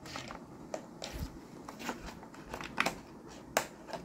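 Short, irregular clicks and taps of a USB cable and SATA-to-USB adapter being handled at a laptop's USB port, about seven light knocks spread over a few seconds.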